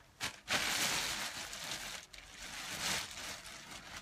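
Rustling and handling noise close to the microphone, in two stretches of hiss with a few light clicks.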